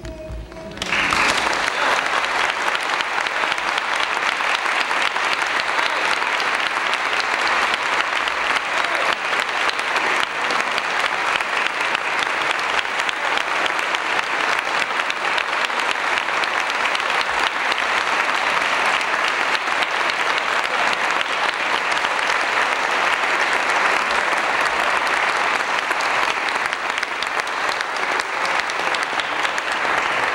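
The choir's last sung note dies away, and about a second in an audience breaks into applause that goes on steadily.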